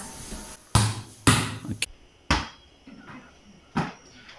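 A volleyball struck repeatedly with the hands: four sharp thuds about half a second apart in the first half, then one more near the end.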